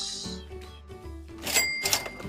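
A cash-register "ka-ching" sound effect, a short bright ringing chime about three-quarters of the way through, over quiet background music.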